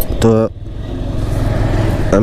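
Motorcycle engine running steadily at low road speed under wind hiss, with a short spoken syllable about a quarter second in.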